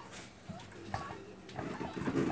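A few faint, short chirps from a small caged pet bird.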